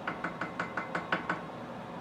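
Wooden spoon knocking against the glass of a gallon jar of sweet tea: a rapid run of light knocks, about seven a second, for the first second and a half, then fading.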